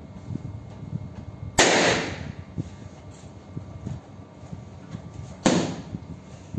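Two balloons bursting, about four seconds apart, each a sudden loud pop with a short ring after it.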